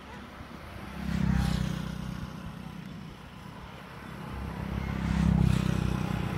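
Motor vehicles passing close by twice, the engine hum swelling and fading about a second in and again near the end.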